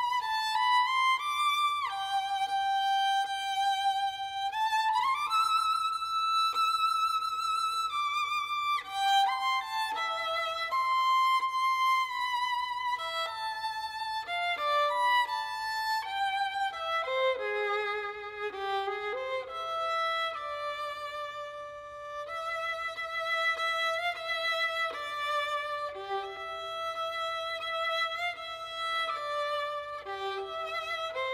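A violin playing a waltz melody, the notes held with vibrato and sometimes sliding from one pitch to the next.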